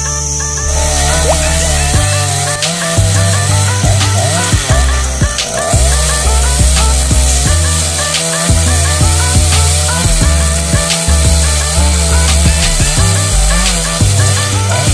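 Background music with a steady beat, with a two-stroke chainsaw running and revving faintly underneath.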